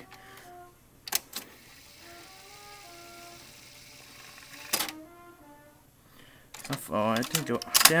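Cassette deck transport buttons being pressed: two sharp clicks close together about a second in and another near five seconds, as a tape is cued up. A faint run of short musical notes sounds between them, and muttered speech comes near the end.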